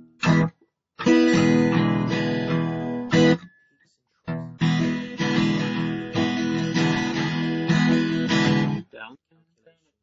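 Acoustic guitar strummed chords in two passages, the first ending about three seconds in and the second picking up after a short break and ringing until about nine seconds in, where the playing stops.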